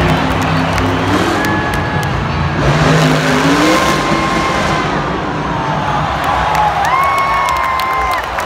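A monster truck's supercharged V8 revving hard, rising in pitch twice as it launches over a dirt ramp, over a cheering stadium crowd.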